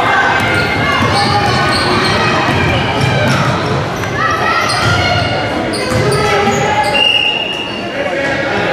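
Busy gym during a youth basketball game: many voices from the sidelines and court echo in a large hall, with a basketball bouncing on the hardwood floor.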